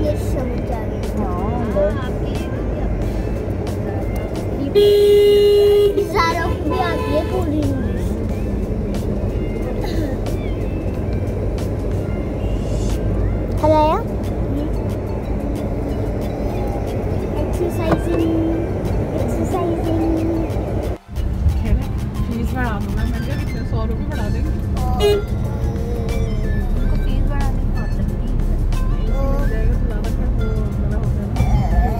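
Steady engine and road rumble heard from inside a moving car, with a vehicle horn sounding once, loud, for about a second about five seconds in.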